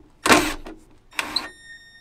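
Milwaukee cordless drill/driver driving the screw that clamps a battery cable lug to an inverter's battery terminal: two short bursts of the motor, then a steady high whine in the last half second.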